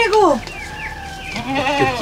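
A goat bleating: a quavering call that falls in pitch in the first half second, followed by softer short sounds about a second and a half in.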